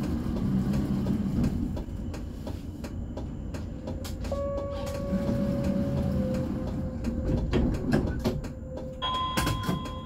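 Inside a city tram's cab: a steady low rumble with scattered clicks and rattles. A steady whining tone sets in about four seconds in, and a second, higher tone joins near the end.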